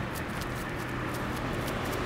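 A small dog's paws scuffing and scratching at dry grass and dirt as it kicks its hind legs back, heard as quick, irregular scrapes over a steady low background hum.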